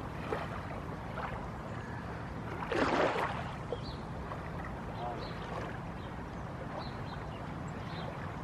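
Small waves lapping on a lake shore over a steady low rumble, with one louder surge about three seconds in.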